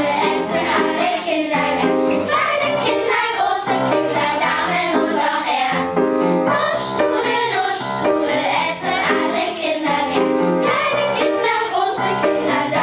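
Children's choir singing a German song to upright piano accompaniment.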